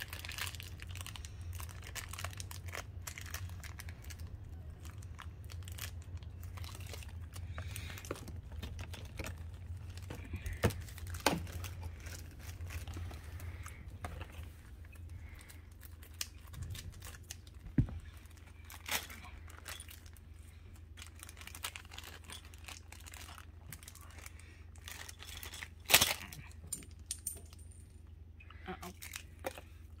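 Plastic packaging crinkling and small plastic toy parts clicking and tapping as they are handled, with a few louder sharp clicks and a steady low hum underneath.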